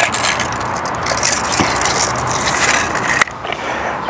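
A steady, crackly scraping and rustling noise lasting about three seconds, which cuts off suddenly.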